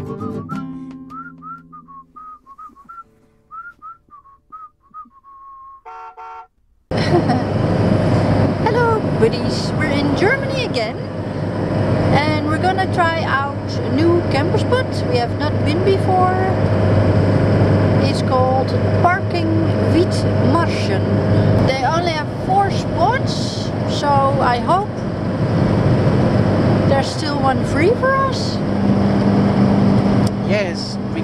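A whistled tune over guitar fades out over the first few seconds. Then, from about seven seconds in, there is the steady engine and road noise inside a moving camper van's cab, with a person talking over it.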